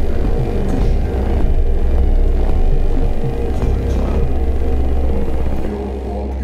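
Intro theme music with a heavy bass and a steady beat.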